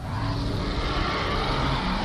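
A whooshing rush of noise that swells and fades away near the end, over a steady low hum: a soundtrack sound effect.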